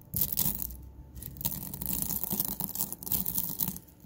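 Whole roasted coffee beans being crushed with a pestle in a stone mortar: irregular crunching and cracking as the beans break up, with a brief lull about a second in.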